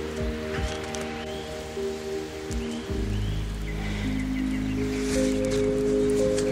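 Background music of slow, sustained chords, moving to a deeper chord about halfway through.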